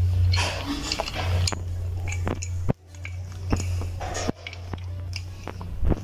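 Small clicks and scraping as carbon brushes are pushed by hand into the brush holders of a car's electric radiator fan motor, with several sharp clicks in the second half. A steady low hum runs underneath.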